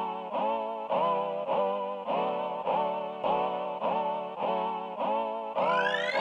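Roland Fantom synthesizer playing a note that repeats a little under twice a second, each note scooping up in pitch as it starts, over a steady low tone. A rising sweep comes in near the end.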